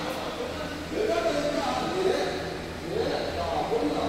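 A person's voice speaking, over a steady low hum.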